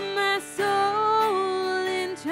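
A worship song sung by women's and a man's voices over a strummed acoustic guitar, in long held notes with a brief break between phrases about half a second in.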